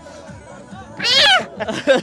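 A young child's high-pitched squeal about a second in, lasting about half a second, its pitch sliding up and then down.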